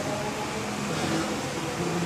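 Steady hiss of room noise from a running fan or air handling, with faint, indistinct voices underneath.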